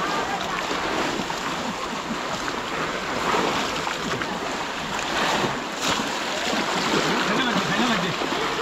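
Muddy water sloshing and splashing as several people wade and plunge bamboo cage fish traps (polo) into it, with voices calling in the background.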